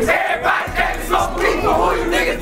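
A group of men shouting and chanting together over a trap beat, its deep bass cutting out for a moment near the start.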